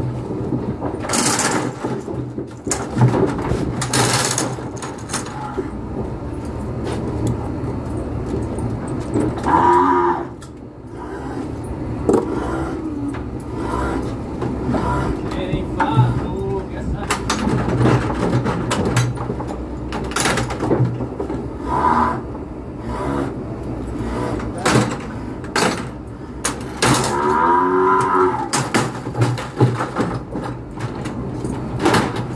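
A weaned calf bawling in a cattle squeeze chute: a short call about ten seconds in and a longer, wavering one near the end. Between the calls come repeated sharp knocks and clanks from the chute.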